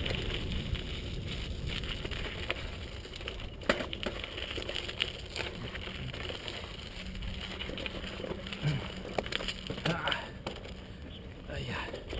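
Mountain bike riding down a rough, stony dirt singletrack: tyres rolling over dirt and stones and the bike rattling, with sharp knocks as it hits rocks, the clearest about three and a half seconds in, over a steady low rumble.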